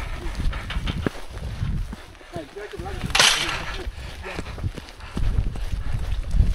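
Boots tramping along a wet, muddy track in an irregular run of knocks, with wind rumbling on the microphone. A short laugh comes about two seconds in, and a sharp breathy hiss a second later.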